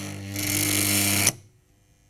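Industrial changeover contactor buzzing as the solar inverter's output voltage ramps up. Its coil is fed too little voltage, so it vibrates and the contacts chatter instead of switching cleanly. The buzz turns into a harsh rattle after a moment and cuts off suddenly just over a second in.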